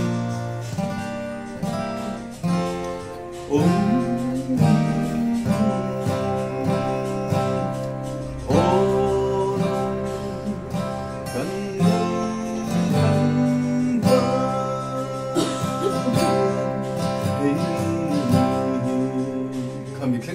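A man singing a song while strumming chords on an acoustic guitar.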